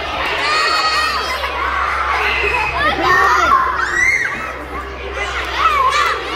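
A crowd of young children shouting and cheering, many high voices overlapping and rising and falling in pitch.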